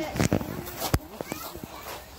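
Young people's voices in short bits, with a single sharp thump about a second in.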